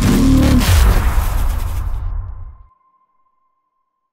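Logo-intro sound effect: a loud whoosh with a deep rumble and a falling pitch sweep, dying away about two and a half seconds in, with a thin high tone trailing on briefly.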